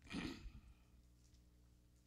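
A man's short breath out, close to a handheld microphone, in the first half second, then faint room tone with a steady low hum.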